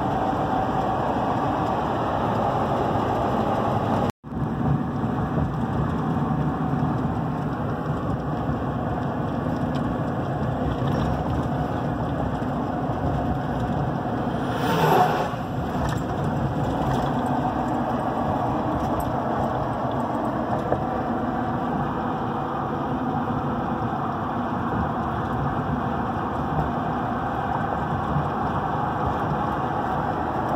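Steady engine and road noise inside a pickup truck's cab while it drives along a paved road. There is a brief louder whoosh about halfway through, and the sound cuts out for an instant about four seconds in.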